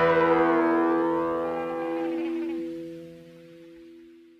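The last chord of a Soviet rock song held and fading out, with a slow sweeping effect across it. It dies away to silence near the end.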